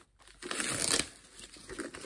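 Packaging wrapping crinkling as it is pulled off a new handbag: a loud burst of crinkling about half a second in, then softer rustling.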